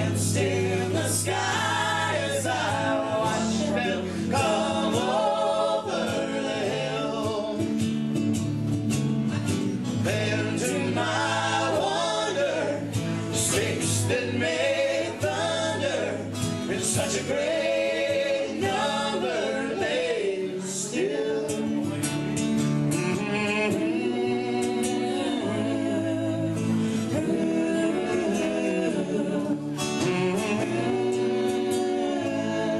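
Live acoustic country band playing: two strummed acoustic guitars and an electric bass under lead and harmony singing.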